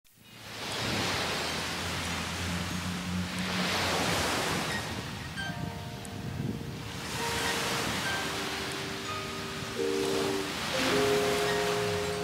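Sea waves washing on a beach, fading in at the start and swelling every three to four seconds. Soft background music of long held notes comes in about five seconds in and builds into chords.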